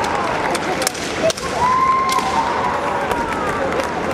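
Kendo fighters' kiai shouts, long held yells that start about a second and a half in, over sharp clacks of bamboo shinai and knocks on the wooden floor.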